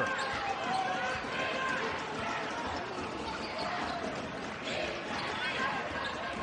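A basketball being dribbled on a hardwood court, over the steady background chatter of an arena crowd.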